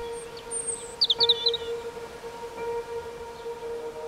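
Opening of soft ambient background music: one long held note with faint overtones. A few short bird chirps sound about a second in.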